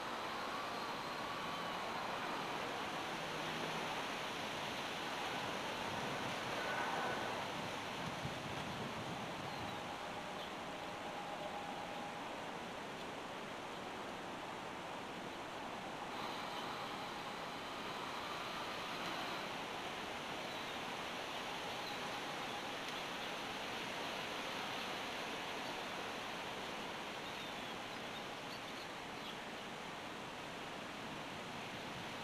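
Steady outdoor background hiss with no clear events, and a few faint short tones in it.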